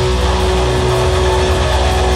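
A rock band playing live and loud, without singing. A dense, sustained wall of electric guitar run through effects pedals sits over a steady low bass.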